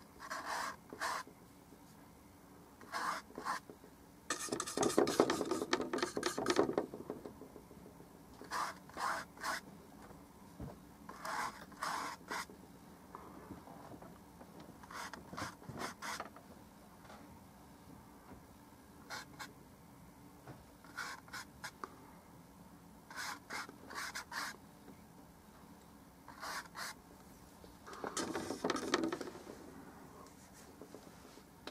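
Paintbrush strokes on canvas: short scratchy strokes, often in quick pairs, with two longer stretches of scrubbing, about five seconds in and near the end.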